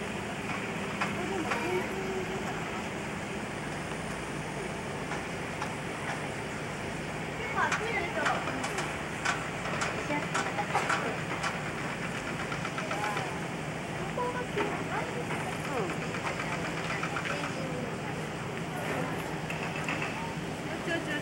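Indistinct voices of people nearby over a steady low hum and background noise, with the voices busiest in the middle of the stretch.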